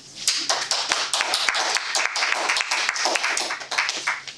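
Audience applauding: the clapping starts a moment in and stops near the end.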